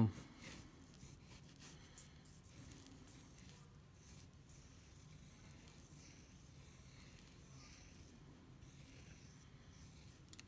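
A pencil scratching lightly on paper in short repeated strokes, sketching a circle.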